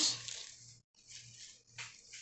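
White packing paper rustling as it is pulled away from a bare-root desert rose seedling, twice briefly, about a second in and again near the end.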